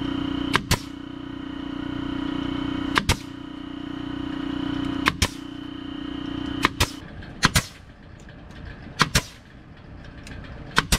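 Pneumatic stapler firing staples through plastic fencing into wooden framing, six shots, each a sharp double crack. Under it an air compressor runs with a steady hum that grows louder, then cuts off about seven seconds in.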